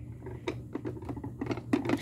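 Plastic toy convertible pushed backward by hand across brick paving, its wheels and body giving a quick run of small clicks and rattles.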